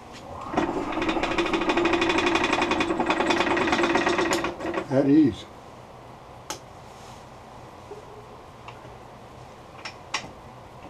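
Wood lathe turning the chuck while a holly bowl blank is held and threaded onto its worm screw: a loud steady buzzing hum with rapid ticking for about four seconds, then a short sound that drops sharply in pitch as it stops. A few faint clicks follow.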